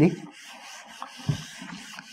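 Handheld whiteboard eraser wiping marker off a whiteboard: a steady rubbing swish.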